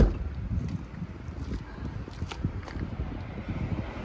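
Wind buffeting the microphone, a low steady rumble, with a sharp knock right at the start and a few faint ticks.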